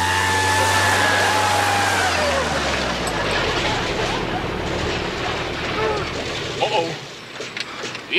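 Small single-engine propeller plane's engine droning with a high whine, then winding down and cutting out about two seconds in: a stall in flight. A steady rush of air over the airframe carries on after the engine stops.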